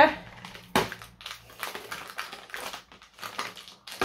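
Fingers picking and pressing at a cardboard advent calendar door to push it open: one sharp crack about three-quarters of a second in, then a run of irregular small clicks and scratches.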